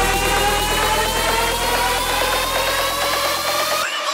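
Electronic dance music build-up: a synth riser glides steadily upward in pitch over a fast repeating beat. The bass cuts out just before the end, leading into the drop.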